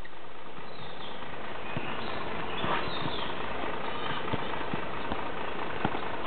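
Steady outdoor background noise with a few faint, scattered taps and no voices.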